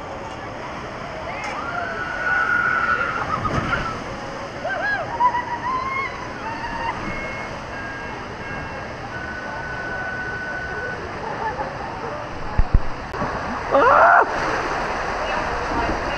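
Water rushing and sloshing steadily along a water slide flume, with a rider's loud cry of "Ah!" near the end.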